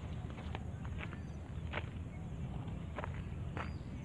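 Footsteps in flip-flops crunching on gravel, irregular steps about every half second to a second, over a steady low rumble.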